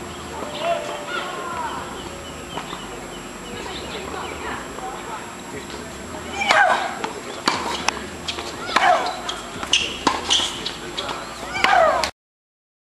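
A female tennis player's loud shrieks as she strikes the ball, each one falling in pitch. The first comes with her serve about halfway through, and two more follow on her strokes in the rally. They are mixed with sharp racket-on-ball hits and ball bounces on the hard court.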